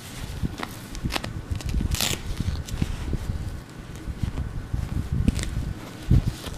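Huggies disposable diaper rustling and crinkling as hands smooth it and fasten its tabs, with soft irregular thumps of handling and a few sharp crackles.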